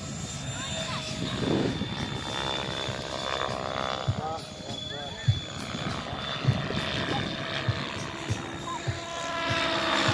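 Mikado 690 radio-controlled helicopter flying: a steady high whine from its drive, with the rotor sound swelling as it comes nearer toward the end, and short low thumps throughout.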